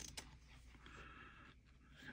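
Near silence, with a faint rustle of stiff fabric being handled.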